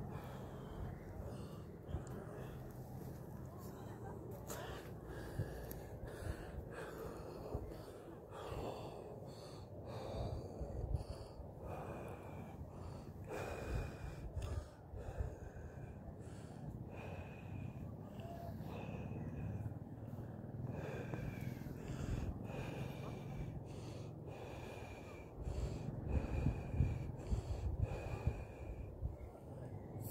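Wind rumbling on a phone's microphone, with scattered rustles and small knocks. In the second half a faint thin whistle comes back every second or two.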